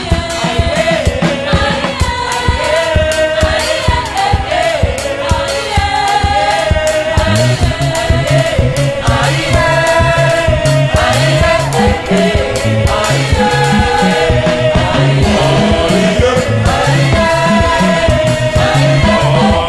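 Gospel choir and lead singers singing in harmony with a live band, held sung notes over a steady drum beat.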